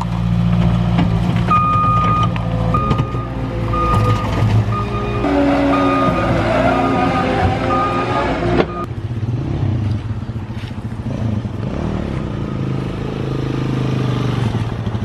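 Caterpillar 289D compact track loader's diesel engine running steadily, its reversing alarm beeping about once a second. The beeping stops partway through and the engine drone carries on more quietly.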